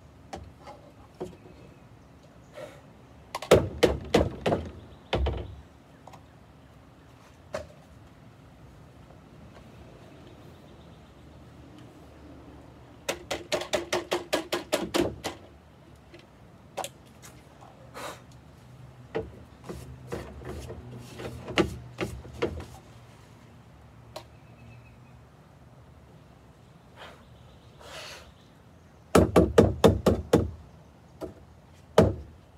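Plastic dirt cup and filter of a Bissell CleanView vacuum being knocked against the rim of a plastic garbage can to shake the dust out: bursts of knocks every few seconds, including a fast run of about five a second near the middle.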